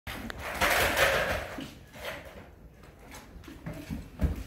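A puppy and a cat scuffling together on a hardwood floor. There are a couple of clicks, then a loud burst of scrabbling noise about half a second in that lasts about a second, followed by softer scuffs.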